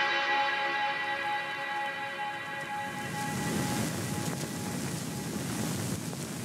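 Background music with held notes fades out over the first few seconds. It gives way to a steady rushing noise of wind on the microphone outdoors.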